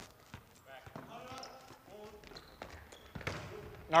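Volleyball rally in a gym: a few sharp ball contacts, the loudest about three seconds in, with faint shouts from players on the court.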